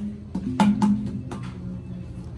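A set of tuned bamboo tubes of graded length, struck over their open ends with a beater: about four hollow strikes, each giving a low note that rings on briefly.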